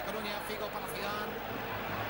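A male TV football commentator talking in Spanish over a steady bed of stadium crowd noise.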